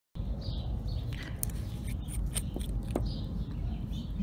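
Outdoor ambience: a steady low rumble with faint bird chirps, and a few light clicks.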